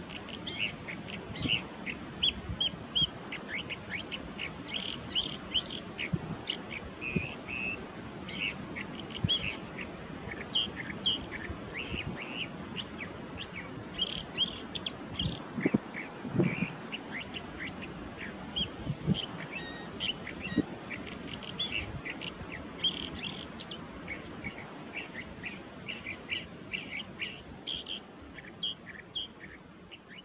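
California thrasher singing: a long, varied run of short phrases of quick notes, with brief gaps between the phrases.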